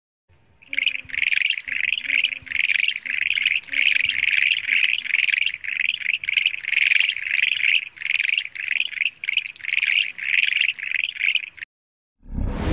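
A rapid series of short, high animal calls, about two to three a second, at a steady pitch, starting about a second in and stopping just before the end.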